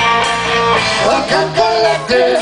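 Live rock band playing through an outdoor PA: electric guitars over bass and drums, with a voice singing from about halfway through.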